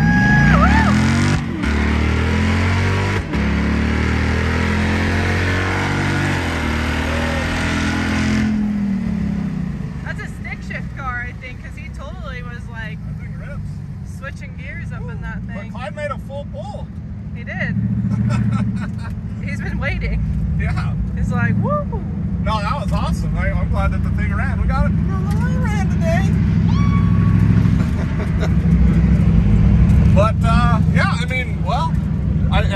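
Swapped Gen V L83 5.3-litre V8 in a 1972 Mazda RX-2, heard from inside the cabin at full throttle on a drag-strip pass. The revs climb, with brief breaks at the gear changes about a second and a half in and again about three seconds in. About eight seconds in the throttle lifts and the engine drops to a low rumble as the car coasts.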